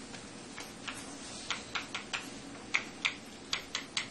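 Chalk tapping and clicking against a blackboard as a structure is drawn: a run of short, sharp, irregular taps, most of them in the second half.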